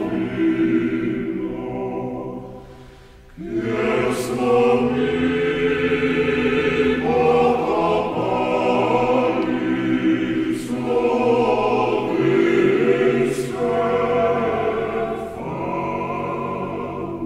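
Male vocal octet singing a cappella in close harmony. A phrase dies away about three seconds in, and the next one starts right after.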